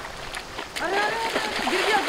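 Several people's voices, exclaiming and laughing, starting about a second in, over the steady rush of a mountain river.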